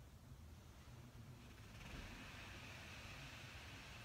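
Near silence: room tone with a faint low hum, and a faint soft hiss coming in about halfway through.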